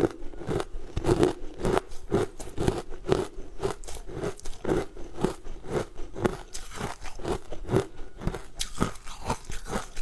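A person chewing sugar-coated fruit jelly candy with the mouth closed, close to a clip-on microphone: a steady run of short, moist chews and slight crunches of the sugar coating, about two a second.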